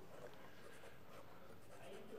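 Quiet room tone of a meeting chamber with faint rustling of papers.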